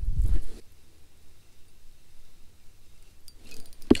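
A short low rumble of handling noise at the start, then a quiet stretch with a few faint ticks and one sharp click near the end, from the angler's spinning rod and reel as he casts and retrieves.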